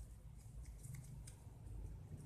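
Faint rustling and crinkling of ribbon being handled and woven by hand, in scattered soft scratchy ticks over a low steady hum.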